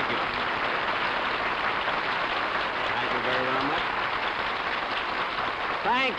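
A studio audience applauding steadily.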